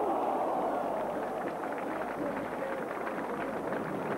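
Large football crowd noise from the stands, a steady roar that eases off slightly over the few seconds.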